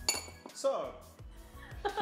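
A metal spoon clinks once against a dish, a single sharp clink with a short ringing tail, as it is set back after spooning desiccated coconut.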